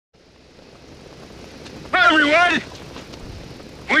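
Steady rush of wind and engine noise from a biplane in flight, fading in over the first two seconds. A man's raised voice calls out briefly about two seconds in and starts speaking again right at the end.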